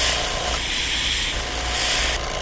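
An airbrush spraying paint through a stencil card onto a plastic lure: a steady hiss of air and paint mist.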